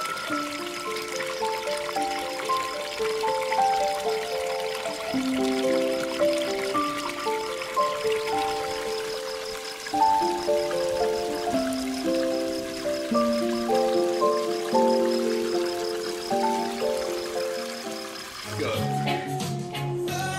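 Instrumental background music: a melody of clear, separate held notes. Faintly underneath, water trickles from a spring spout into a stone trough.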